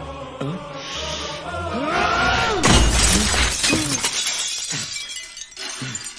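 Glass tabletop smashing about three seconds in: one sudden loud crash followed by shards crackling and settling. Film score runs throughout, with gliding, swelling tones building just before the crash.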